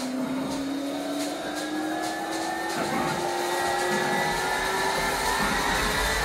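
Live rock band in a slow, spacey jam passage: a sustained amplified instrument tone glides slowly upward in pitch, with light cymbal ticks in the first half. Low bass comes in about two-thirds of the way through as the music slowly swells.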